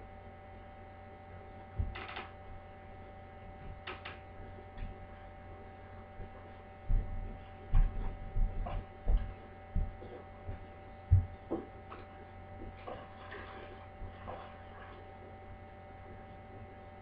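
A walker knocking on the floor in a series of short, low thumps as it moves, most of them in the middle stretch, over a steady electrical hum.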